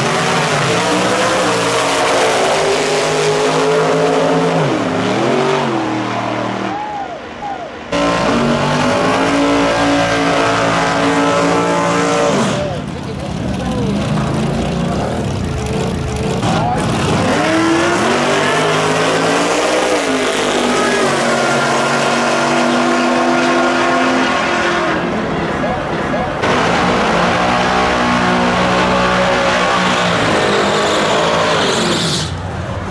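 Drag-racing cars' engines revving loudly at the starting line and accelerating away, the pitch climbing as they pull through the gears. The sound jumps abruptly several times, at about 8, 12, 17 and 26 seconds in, as one run gives way to the next.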